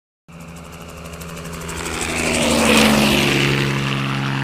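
Sound effect of a propeller aircraft flying past: an engine drone that starts a moment in, swells to a peak a little past halfway and dips slightly in pitch as it passes.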